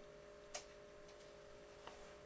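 Near silence with a faint steady hum, broken by a sharp click about half a second in and a fainter click near the end.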